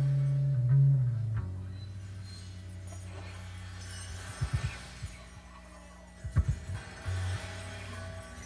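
Live rock band in a quiet, sparse instrumental passage: a loud held bass note fades out about a second in, leaving faint sustained guitar tones, with a few short low bass or drum hits near the middle and again later.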